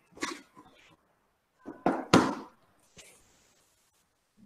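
Handling noise close to a headset microphone: a few short rustles and bumps, the loudest pair about two seconds in, then a faint click about three seconds in.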